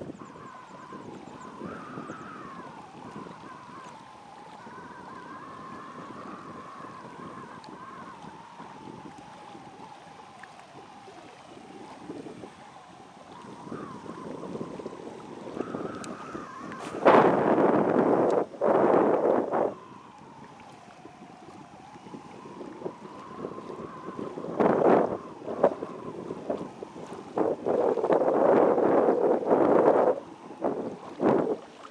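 Wind buffeting the microphone, with loud gusts about halfway through and again near the end. A faint wavering whistle runs underneath between the gusts.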